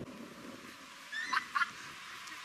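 Dog yelping twice in quick succession during rough play, two short high-pitched cries about a second in.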